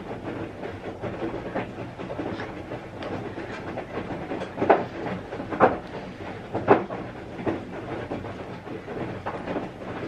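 Washing machine running, a steady mechanical rumble and hum, with three short knocks around the middle.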